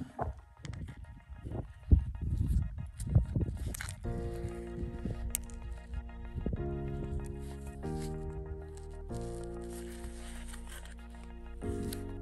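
Knocks and scrapes of split rock pieces being handled in leather-gloved hands, with the sharpest knock about two seconds in. From about four seconds in, background music with sustained chords that change every second or so takes over.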